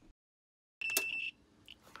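After a short dead gap, a digital multimeter's continuity beep: one steady high tone about half a second long, starting with a click as the probes touch. Light probe clicks follow. The continuity beep on the fuse shows the fuse is intact.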